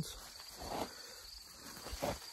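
Insects chirring steadily in a high-pitched band, with faint rustling of pepper plant leaves as a hand pushes through the foliage.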